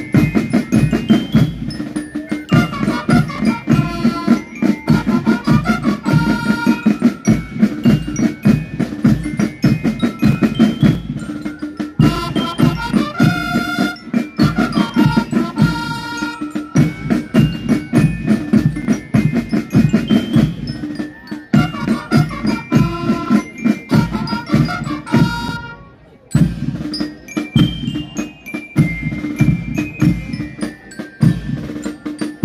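Marching band playing: rapid drum strokes under a bell-like melody, with a brief break about four seconds before the end.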